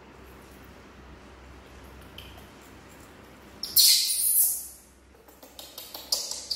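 A young macaque gives one loud, shrill squeal lasting about a second, a little past halfway through. Before it there are only faint clicks of a knife peeling a persimmon over a low room hum.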